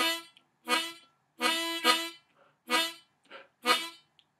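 Diatonic blues harmonica in A, played tongue-blocked: a run of short 2-draw notes, each slapped from a chord down to a single note by the tongue. Five clear notes on one steady pitch, the third held longest, with two faint short ones between the later notes.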